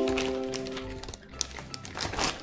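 A voice holds one steady note that fades out over about a second. Then the plastic wrapping of a wig package crinkles in short, scattered rustles.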